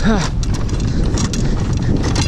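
A man grunts "huh" with exertion while walking and carrying a load of gear. Irregular footfalls and gear knocking sound over a steady wind rumble on the microphone.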